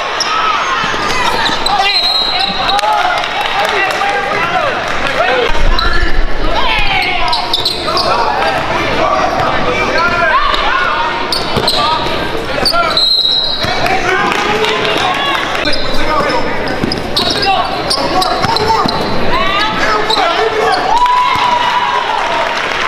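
Voices of spectators and players shouting and talking over one another in a reverberant school gym during a basketball game, with a basketball bouncing on the hardwood court. A couple of brief high-pitched tones cut through, about two seconds in and again past halfway.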